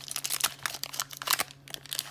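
Foil Pokémon booster pack wrapper crinkling and crackling in the hands as it is torn open, a quick irregular run of sharp rustles.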